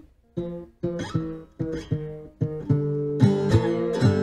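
Fretless three-string cigar box guitar played with a slide: about ten thumb-plucked notes, starting a moment in. The slide on the middle string steps down chromatically from the flat seventh to the fifth, a blues ending phrase in G, with the other strings ringing.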